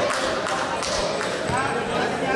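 A basketball bouncing a few times on the court floor, with indistinct voices echoing in the gym.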